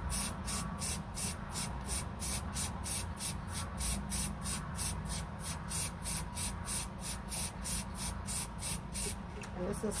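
Aerosol spray paint can hissing in short spurts as golden-yellow paint is sprayed onto a stainless steel tumbler. A fast, even, high-pitched pulsing, about four a second, runs throughout.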